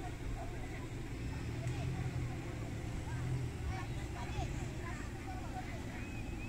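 Indistinct voices of people talking at a distance, over a steady low rumble of outdoor background noise.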